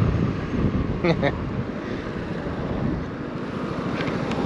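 Wind buffeting the microphone over the low, steady running of a Vespa GTS300 scooter's single-cylinder engine and road noise while it is ridden.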